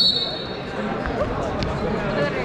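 A short, high whistle blast right at the start, typical of a wrestling referee's whistle, over the chatter of a gym crowd. A few dull thumps follow.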